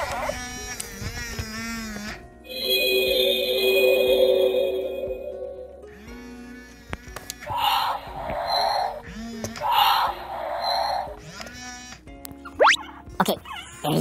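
Galactic Snackin' Grogu animatronic toy playing its recorded baby sounds and effects in response to being patted on the head: a long held electronic tone, then two short noisy bursts, over background music.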